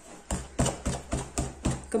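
Very sticky, wet Moroccan bread dough (khobz dar) being beaten by hand in a bowl: it is lifted and slapped down again and again. The result is a steady run of wet slaps, about seven in quick succession at three to four a second.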